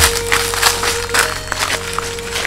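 Footsteps of two people walking through dry leaf litter and grass, about three crunching rustles a second, over soft background music holding one long note.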